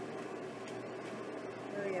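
A plastic spatula scraping and lifting dried egg on a plastic food-dehydrator tray, a few faint light scrapes and clicks over a steady background hum. A woman says "oh" at the very end.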